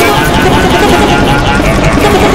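A loud, dense jumble of several cartoon soundtracks playing over one another: overlapping character voices mixed with sound effects, no single voice or sound standing out.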